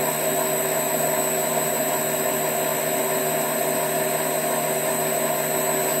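Rivett 608 lathe running steadily: a constant electric-motor and drive hum with several fixed tones over a low noise.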